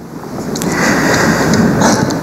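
Hurricane Irma's wind and driving rain, a loud rushing noise that builds over the first second, played back from a phone-style video through a hall's speakers.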